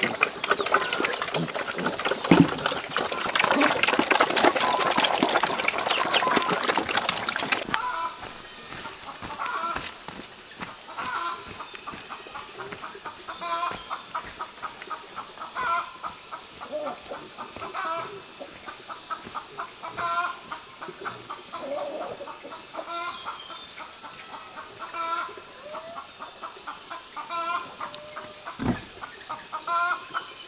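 Pigs feeding noisily at a trough for the first several seconds. Then chickens clucking in short calls every second or two over a steady high-pitched hiss.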